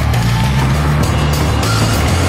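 Loud background music with a bass line stepping between a few low notes under a dense, busy top end.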